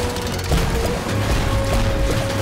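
Cartoon background music over sound effects: a ship's wheel spun with a ratcheting clatter, and heavy thumps about half a second in and near the end.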